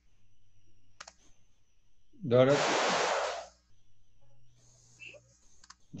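Video-call audio: a sharp click about a second in, then a brief, loud burst of a voice coming through the call, cut off after about a second, and a few faint clicks near the end.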